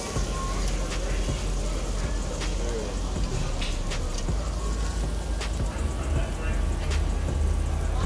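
Pork belly and beef sizzling on a Korean barbecue grill plate, a steady crackling hiss over a low rumble, with a few light clicks of metal tongs against the plate.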